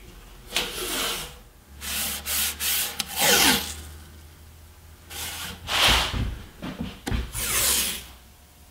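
Painter's tape being pulled off the roll and pressed down along the edge of a wooden drawer. It comes as several short, noisy pulls of under a second each.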